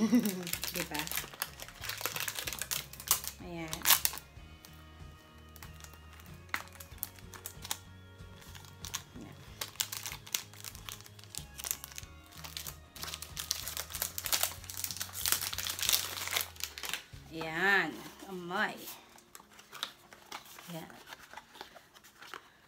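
Plastic wrapping on a new perfume box crinkling as it is torn open and handled, in bursts over the first few seconds and again around the middle, over soft background music.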